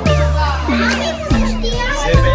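Upbeat background music with a deep bass line, with children's high excited voices gliding over it.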